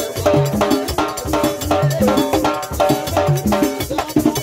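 Haitian Vodou ceremonial percussion: a metal bell struck in a quick, steady pattern, about four strokes a second, over drums.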